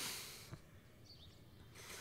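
A man's heavy breath out into a pillow, fading over about half a second, then faint room tone.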